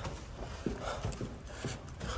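Footsteps of a person walking briskly on a carpeted corridor floor, about two dull steps a second.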